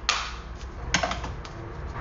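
A few sharp clicks and knocks, roughly one a second, from a small object being tossed and handled in a kitchen.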